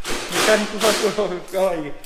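Voices talking; the words are unclear.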